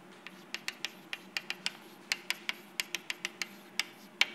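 A stick of chalk writing capital letters on a blackboard: an irregular run of sharp taps and short scrapes, about five a second, over a faint steady room hum.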